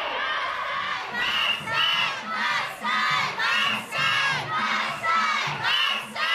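A group of women chanting "wasshoi, wasshoi" in a steady rhythm as they carry a portable Shinto shrine (mikoshi). The chant grows louder about a second in.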